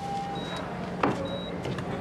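Intensive-care ward background: a patient monitor giving a short, faint high beep about once a second over a steady low hum, with a single sharp click about a second in.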